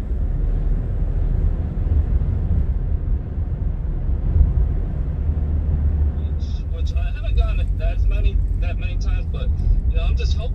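Steady low rumble of a car driving along a road, heard from inside the cabin. A voice starts talking about two-thirds of the way through.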